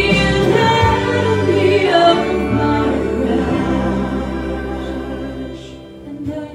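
A woman singing live into a microphone over instrumental accompaniment, holding long sustained notes that fade away toward the end.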